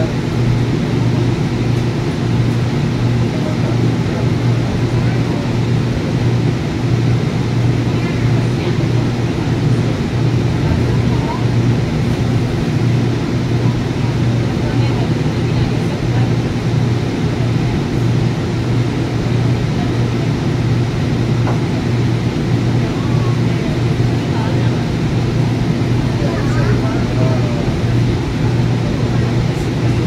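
Inside a light-rail car running at steady speed: a constant low hum with rumbling wheel and track noise, unchanging in level.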